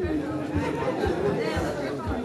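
Voices talking and chattering in a large hall.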